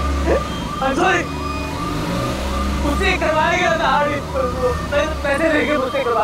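A man wailing and crying out in fear, his voice rising and falling, over the low steady hum of a car engine.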